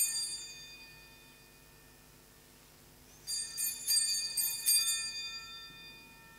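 Altar bells rung at the elevation of the chalice after the consecration: one bright shake right at the start that rings away, then a run of several more shakes from about three to five seconds in, high and ringing.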